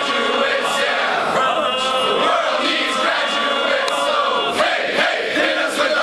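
A large group of voices singing a song together, loud and steady throughout.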